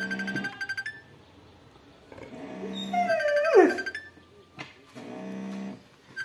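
Dogs vocalising in a squabble over food: a pulsing, rattly grumble, then a whining call that slides steeply down in pitch about three and a half seconds in, then another short grumble near the end.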